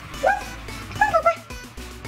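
An eight-week-old chocolate Labrador puppy gives two short, high-pitched cries, a quarter second in and again about a second in, over background music.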